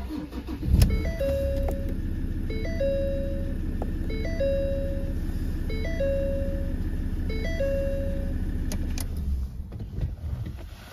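Ford Ranger Wildtrak engine cranking and catching in the first second, then idling steadily. Over the idle, a dashboard warning chime sounds five times, about every second and a half, each a quick two-step note followed by a held tone. The sound falls away just before the end.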